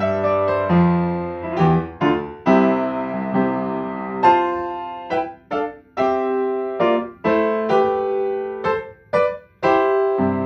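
Solo upright piano playing a slow piece of chords and melody, each chord struck and left to ring and fade. In the second half the chords are cut off sharply, with short breaks between them.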